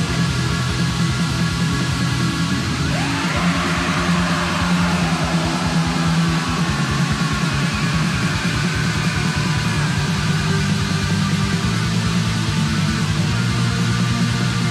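Black metal recording: distorted guitars over fast, dense drumming with a rapid kick drum, at a steady loud level. About three seconds in, a sweeping higher tone rises and then falls back across the mix.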